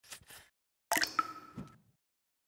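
Sound effect of a liquid drop falling from an eyedropper: two short soft hissing sounds, then about a second in a sharp plop with a brief ringing tone, followed by a low thump.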